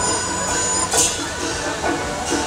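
Metal percussion from a Song Jiang Zhen troupe's gong-and-cymbal accompaniment: steady high ringing, with one cymbal clash about a second in.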